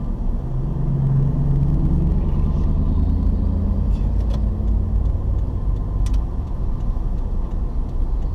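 Car engine and road rumble heard inside the cabin while driving slowly. A lower engine drone swells about a second in and fades out by the middle.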